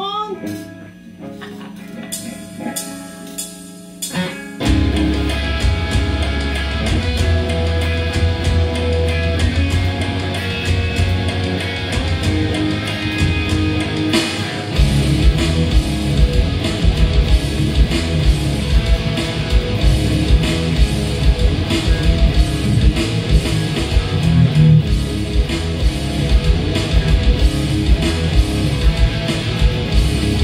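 Electric guitars, one a new SG, playing the instrumental intro of a song over a backing track with drums and bass. A few guitar notes open it, the full band comes in about four and a half seconds in, and a heavier drum beat joins at about fifteen seconds.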